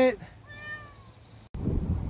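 A cat stuck high in a tree meowing, with one faint, falling meow about half a second in. About a second and a half in, the sound cuts to wind rumbling on the microphone.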